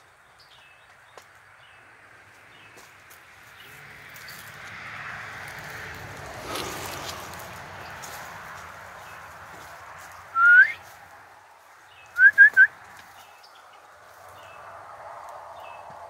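Loud whistled notes: one rising whistle about ten seconds in, then three quick short rising whistles two seconds later, over faint scattered chirps and a swelling rustle of leaves.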